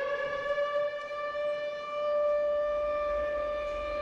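Air-raid siren holding a steady wail after winding up to pitch: the alarm for an air-raid drill. A low rumble comes in under it for the last second or so.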